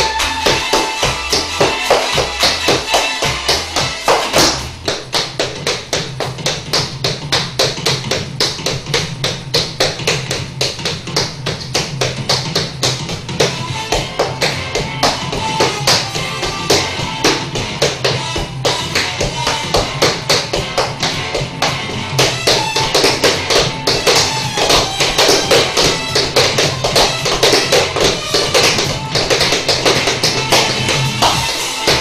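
Tap shoes striking a wooden floor in rapid, dense rhythms, played over a recorded music track whose bass line enters about four seconds in.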